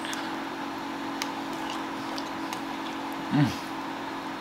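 Steady low hum of room background with a few faint clicks, and a brief closed-mouth 'mm' of appreciation near the end.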